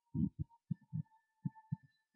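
Heavily muffled speech with only its low, bassy part left: short thudding syllables in an irregular run, over a faint steady high whine.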